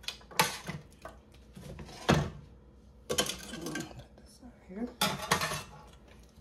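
Metal tongs clinking and scraping against a stainless steel pan and pot as rib tips are lifted out and dropped into barbecue sauce, several separate clatters with short gaps between them.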